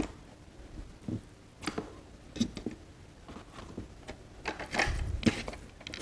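Close-miked eating by hand: a string of short, wet clicks and smacks from chewing and from fingers working rice and boiled vegetables on the plate, coming thicker about five seconds in.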